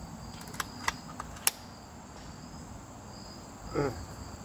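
Crickets trilling steadily, with four light clicks in the first second and a half from the .357 big-bore air rifle being handled.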